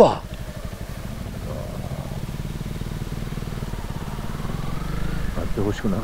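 Honda CRF250L single-cylinder four-stroke dirt bikes running at low revs as they ride slowly along a dirt track, a steady rumble of firing strokes that builds slightly and picks up in pitch in the second half.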